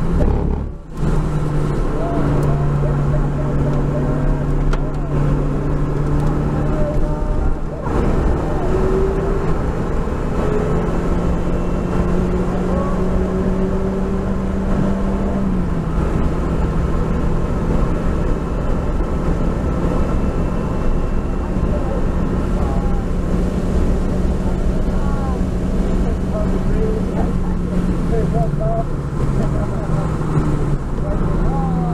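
Lotus Elise engine heard from inside the cabin, running hard at speed with heavy road and wind noise. The engine briefly lifts about a second in, and its note steps down about halfway through and again near the end as the car slows.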